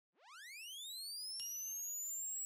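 Synthesized electronic tone sweeping steadily upward in pitch from low to very high and growing louder, with a faint click and a thin, steady high tone joining about one and a half seconds in.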